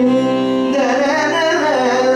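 Carnatic music in raga Kalyani: a male voice sings gliding, ornamented phrases over a steady drone.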